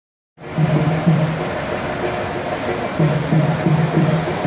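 Steady rush of whitewater rapids, with music carrying over it in short low notes that pause for about a second and a half mid-way; the sound starts a moment in.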